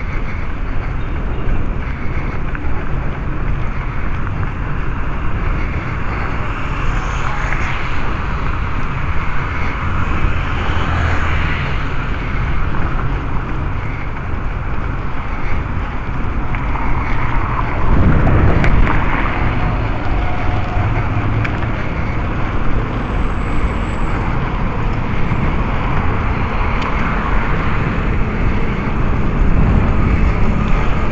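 Wind rushing over the microphone of a moving bicycle, with steady rumble from tyres on the pavement and traffic noise. A louder burst of rumble comes about eighteen seconds in.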